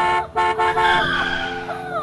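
Car horn honking in two blasts, a short one and then a longer one, followed by a higher sound that slides down in pitch and fades.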